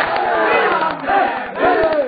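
Crowd of men chanting loudly together in overlapping voices while beating their chests in matam. The open-hand slaps on the chest come rapidly and steadily under the voices.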